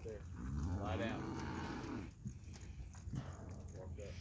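A cow mooing: one long, low moo of about a second and a half, starting just after the start.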